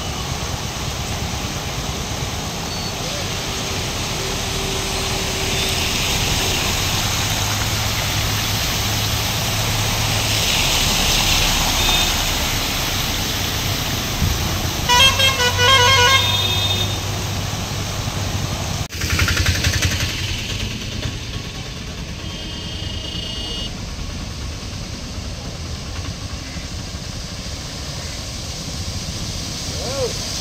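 Vehicles driving slowly through floodwater on a road, a steady wash of water and traffic noise. About halfway through, a vehicle horn beeps rapidly for about a second and a half.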